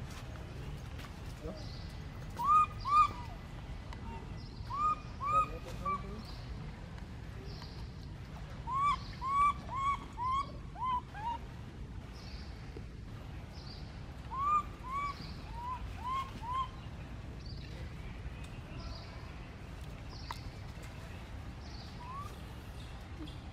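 Baby macaque crying for its mother: short, high cries that each rise and then fall. They come in bursts of two to five, and the loudest pair is about three seconds in.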